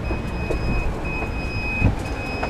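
A car's warning chime beeping at about one long beep a second, over wind rumbling on the microphone, with a small thump near the end.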